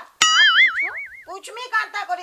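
A cartoon-style "boing" sound effect: a sudden twang whose pitch wobbles up and down for about a second, added for comic effect. Speech resumes after it.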